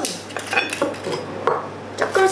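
A few sharp clinks and knocks of glass bottle and small drinking glasses against each other and the tabletop, one of them ringing briefly about half a second in.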